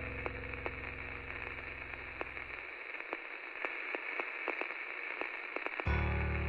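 Crackling static: a thin, old-radio-like hiss dotted with scattered clicks and pops. A low hum under it stops about halfway through and comes back just before the end.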